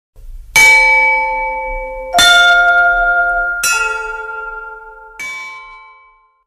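A chime sound effect: four struck bell notes of different pitch, about a second and a half apart, each ringing on and fading, over a faint low rumble.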